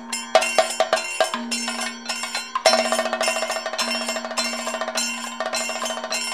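Kathakali percussion ensemble playing: chenda and maddalam drums in rapid strokes with ringing bell-metal strikes, likely the chengila gong and elathalam cymbals, over a steady held drone note.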